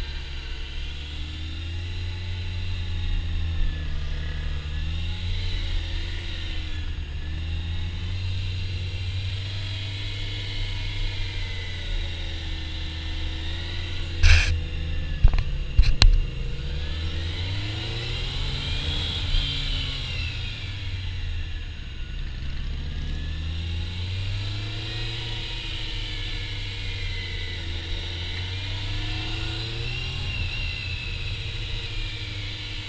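Honda CBR600 F4i's inline-four engine revving up and falling back over and over, every few seconds, as the bike accelerates and slows through a tight gymkhana course, heard from the rider's helmet. A few sharp knocks sound about halfway through.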